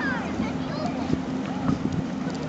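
Steady low drone from the passing lake freighter Walter J. McCarthy Jr., with indistinct voices of people nearby over it.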